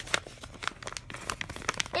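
Paper envelope and letter crinkling as they are handled and opened by hand, a scatter of short, sharp crackles.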